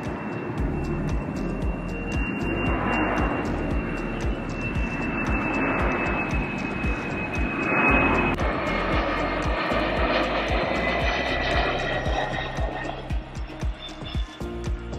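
Airliner flying low overhead on its landing approach: its jet engines give a high whine that slowly drops in pitch, and it is loudest about eight seconds in. Background music with a steady beat plays throughout.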